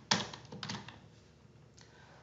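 Two keystrokes on a computer keyboard, about half a second apart, typing an asterisk into a search box.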